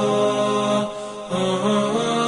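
Background vocal chant: a voice holding long notes that step up and down in pitch, with a brief break about a second in.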